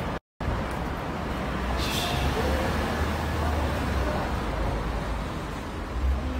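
Town street traffic noise, steady, with a car going by and faint voices of passers-by underneath; it drops out briefly just after the start, and a short hiss comes about two seconds in.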